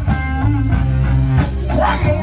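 Rock music with electric guitar and a drum kit, playing steadily.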